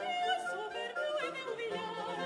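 A woman singing operatically with wide vibrato, accompanied by a small baroque string ensemble with violins and a sustained low bass line.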